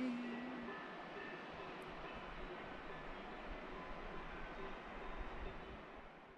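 Steady outdoor rushing noise, with a person's voice holding one long note in the first second. The sound fades out near the end.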